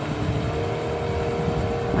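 Motorboat engine running steadily while towing a wakeboarder across open water: a steady hum over a low, uneven rumble.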